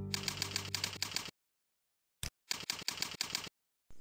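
Computer keyboard typing in two quick runs: about eight evenly spaced keystrokes entering a user name, a lone keystroke after a short silence, then about six more entering a password. A guitar note from the background music fades out under the first few keystrokes.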